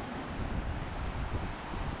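Small ocean waves breaking and foam washing up the sand, with wind buffeting the microphone in a low, uneven rumble.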